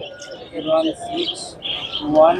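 Pigeons cooing, with short high bird chirps scattered through, over background voices.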